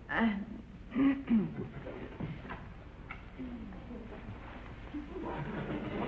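Short, indistinct human voice sounds near the start and again about a second in, then a quieter stretch, with voice sound returning near the end.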